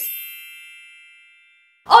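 A single bright, bell-like chime sound effect, struck once and ringing out with several high tones that fade away over about a second and a half.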